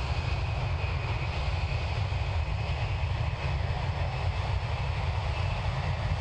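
The four turbofan engines of a US Air Force C-17 Globemaster III running on the ground, making a steady low-pitched jet noise with an even hiss over it.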